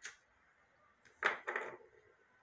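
A lighter being struck: a sharp click at the start, then about a second in two short rasps a quarter of a second apart.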